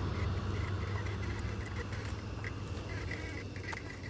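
Waterfowl calling faintly from across the water, short calls repeated throughout, over a steady low rumble.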